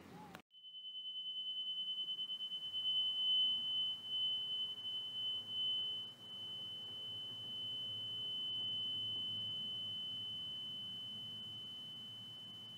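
A single steady high-pitched tone starts about half a second in and holds, over a faint low hum; its level wavers for the first few seconds, then slowly fades.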